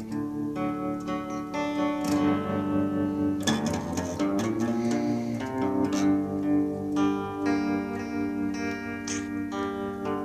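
Clean electric guitar picked slowly: single notes and chord tones that ring on and overlap, changing every second or so, with a few sharper picked attacks.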